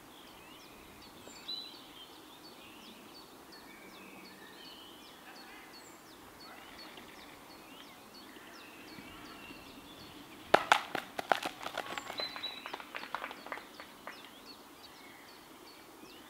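Small birds chirping and singing. About ten seconds in comes a run of sharp clicks lasting some three seconds, loudest at its start.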